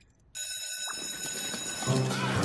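Electric school bell ringing, starting suddenly about a third of a second in and holding steady. Hallway chatter and music come in near the end.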